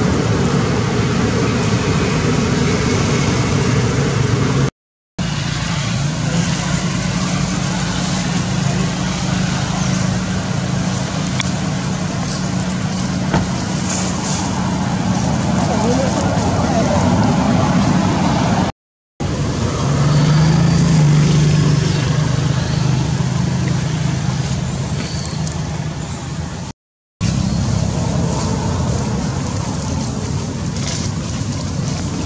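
A steady low mechanical drone, like a running motor, with indistinct voices behind it. It is broken by three short silent cuts.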